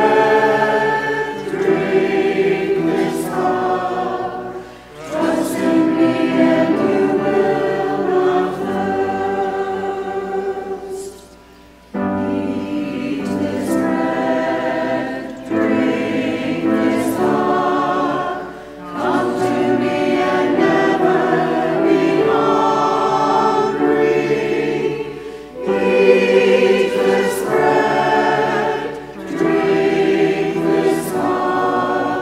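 Church choir and congregation singing a slow hymn together, in phrases of a few seconds with brief breaks between lines. About halfway through there is a near-silent pause.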